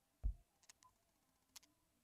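Quiet handling noise from a hand holding a metal lock pick. A soft low thump comes about a quarter second in, then a few faint light clicks, the sharpest about a second and a half in.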